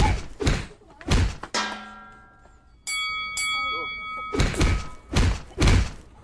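Six heavy thuds, three in the first second and a half and three in the last second and a half. Between them comes a ringing tone that fades, then a steady high-pitched tone lasting about a second and a half.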